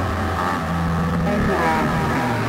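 Heavily distorted electric guitar and bass from a grindcore/punk track, holding sustained notes that bend in pitch.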